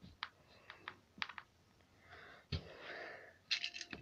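Faint clicks and taps from a plastic toy train coach and plastic track being handled, with a soft thump about halfway through and a breathy sound around it.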